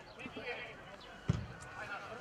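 A football kicked long, one dull thud about a second in, over faint distant voices.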